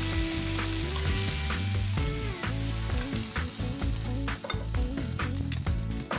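Oil and pork chops sizzling steadily in a hot enameled skillet after searing, with several light clicks of tongs as the browned chops are lifted out.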